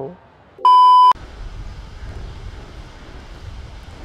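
A single loud electronic beep: one steady high tone lasting about half a second, starting a little over half a second in and cutting off abruptly, followed by a steady low background hum.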